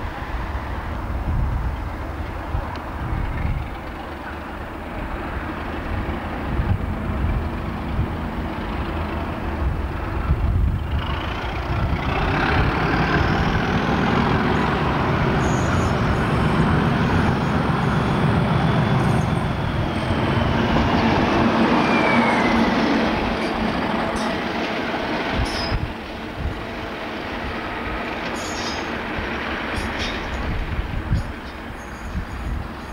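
British Rail class 37 diesel locomotive's English Electric V12 engine running as it draws in along the platform, the sound building to its loudest in the middle. A thin high metallic squeal falls in pitch just past the middle; the sound drops back a few seconds before the end.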